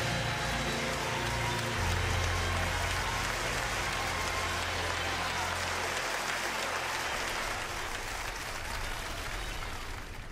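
Large congregation applauding as a choir song ends. A low note from the music is held under the clapping for a few seconds, and the applause thins out near the end.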